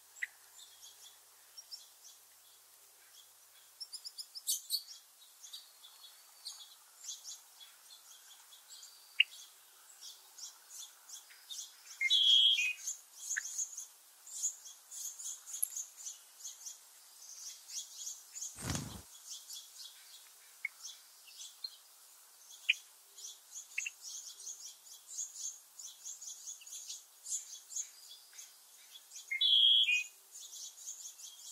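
Small songbirds chirping and calling, with many short high chips throughout and a louder call about twelve seconds in and again near the end. A brief low thump sounds a little past halfway.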